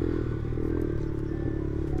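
Liquid-cooled Vento Screamer 250 motorcycle engine running steadily under way on a dirt track, heard from the rider's seat.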